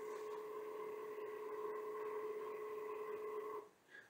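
Revopoint dual-axis turntable's motor rotating the table 18 degrees: a faint, steady whine that cuts off shortly before the end as the move completes.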